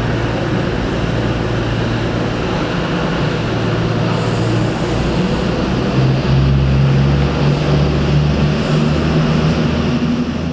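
Intercity passenger train moving through the station, a continuous low mechanical hum with steady low tones over rumbling track noise. About six seconds in the hum grows louder and steps up in pitch as the train works harder.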